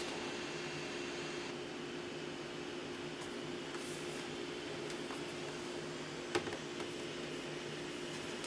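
MacBook Pro's cooling fans whirring steadily at high speed, a constant hum with a faint hiss, the machine still hot from a stress-test load. A light knock about six and a half seconds in.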